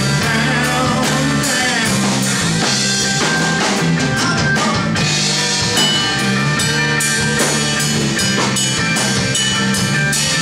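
Live rock band playing: electric guitars, bass guitar and drum kit, with a steady drumbeat.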